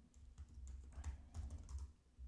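Faint, quick clicking from a computer keyboard and mouse, about ten light clicks over two seconds, with a low thud-like rumble under them.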